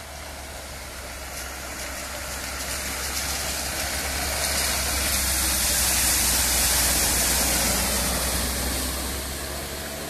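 A Lada Riva estate car driving through a shallow ford: its engine running under the hiss of water thrown up by the tyres. The sound builds to its loudest a little past midway as the car passes, then fades as it pulls away.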